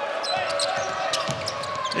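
Basketball being dribbled on a hardwood court, a string of sharp bounces, with brief sneaker squeaks and the steady noise of an arena crowd.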